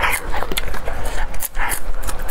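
Close-miked crunching and wet chewing of raw red chili peppers, a quick run of sharp clicks and smacks from the bites.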